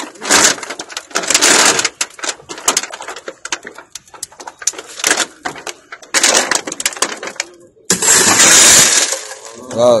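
Car side-window glass being broken, cracking and crumbling in several bursts of noise, the loudest about eight seconds in, over people talking.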